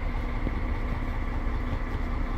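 An engine idling steadily: a low, even running sound with a faint constant hum over it.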